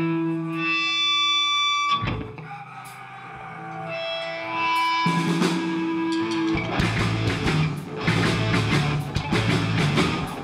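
Live punk rock band starting a song: a distorted electric guitar rings out held notes through its amplifier. Then drums and bass join the guitars about six and a half seconds in, and the full band plays loud and fast.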